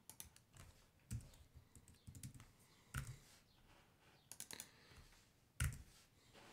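Faint, irregular typing on a computer keyboard, a few keystrokes at a time, with single louder strokes about a second in, at about three seconds and near the end.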